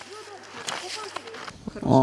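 Ski-race field sound: skis swishing over packed snow in quick strokes, with faint distant voices calling out. A man's voice starts speaking near the end.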